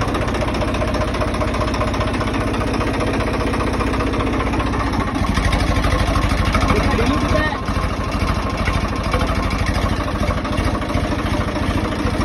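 Swaraj 855 tractor's three-cylinder diesel engine running steadily up close, its low drone getting heavier about five seconds in and easing slightly a couple of seconds later.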